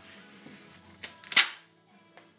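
A strip of paper pulled down off a roll and torn off against a metal tear bar: a soft rustle, a click about a second in, then one short, sharp rip.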